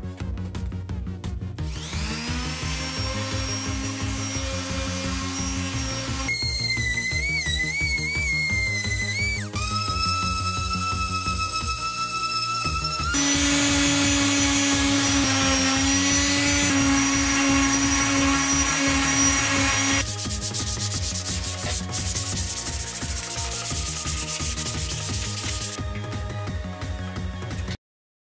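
Electric random orbital sander running against a metal motorcycle fuel tank, a steady hum with a held tone whose pitch jumps abruptly a few times as the sanding shots cut. Background music with a steady beat plays throughout.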